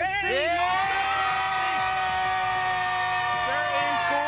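A group of children cheering together in one long, high scream that rises at first and then holds steady for about three seconds.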